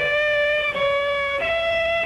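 Violin playing slow, sustained notes: three long held notes, the last one a little higher.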